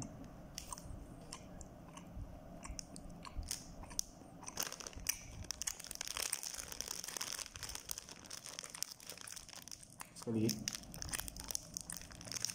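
Close-up chewing of a soft filled bread bun, with small wet mouth clicks throughout, and the bun's plastic wrapper crinkling in the hand.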